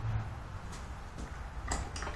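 A few separate mechanical clicks from the ratchet on a tillering tree as it is worked to pull the bowstring of an 85 lb bow further down, the clearest near the end.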